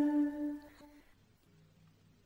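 A single held note, sung or hummed, ending a piece of vocal music; it fades out within the first second, leaving near silence.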